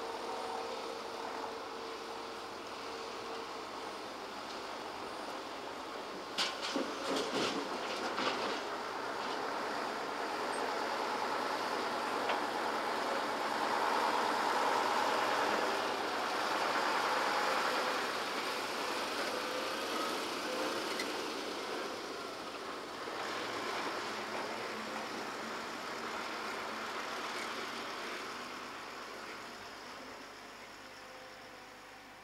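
Diesel dump truck and excavator working at an earthworks site: a steady engine noise, with a quick run of knocks and clanks a few seconds in. A loaded dump truck drives past, loudest around the middle, then fades.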